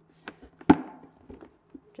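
Thin plastic tube being pushed up through a hole in a cardboard box, with a few light knocks and scrapes against the cardboard, the loudest a sharp tap about a third of the way in.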